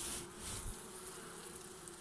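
Honeybees buzzing on a brood frame lifted from an open hive: a faint, steady hum.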